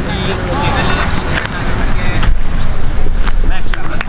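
Wind noise buffeting the microphone, with scattered voices calling out across the field.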